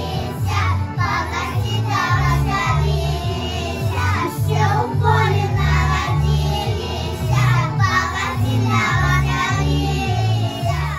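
A group of young children singing a song together over a recorded backing track with a steady, pulsing bass beat.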